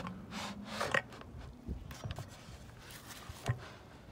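Wooden birdhouse being tilted on its loosely screwed fence mount by hand, the wood scraping and rubbing in a few short bursts, with a short knock about three and a half seconds in.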